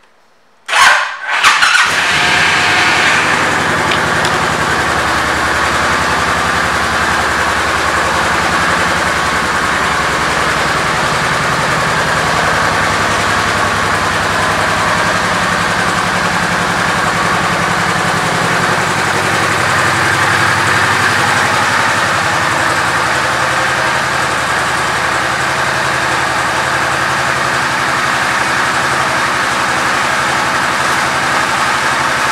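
2007 Honda VTX 1800R's 1,795 cc V-twin cranking briefly on the starter and catching about a second in, then settling into a steady idle.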